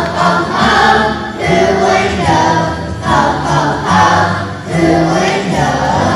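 Children's choir singing a Christmas song together, sustained sung notes over low musical accompaniment.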